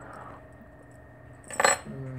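Keys jingling and clinking on a keyring as a small dip can opener is worked onto the ring, with one sharp clink about one and a half seconds in.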